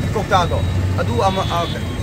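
A person talking over a steady low rumble.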